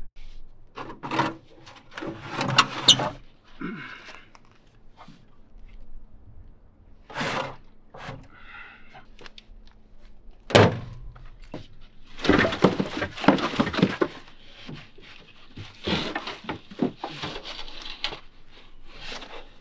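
Irregular thunks and knocks, with stretches of scraping and rattling, from hand work on a school bus: a metal side panel handled and boards and debris pulled from under the bus.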